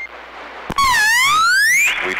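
A CB radio transmission carrying a loud electronic sound-effect tone: after radio hiss and a key-up click, the tone dips briefly and then glides steadily upward in pitch for about a second.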